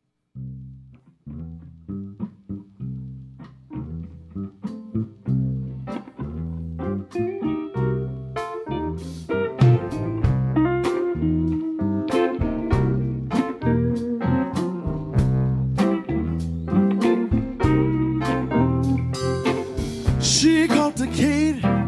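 Live blues band starting a song with an instrumental intro on electric bass, electric guitars, keyboard and drums. It comes in quietly about half a second in and grows louder and fuller over the first ten seconds.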